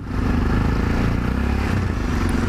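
Yamaha XT 660Z Ténéré's 660 cc single-cylinder engine running steadily while the bike rides along, with wind and road rush over the microphone.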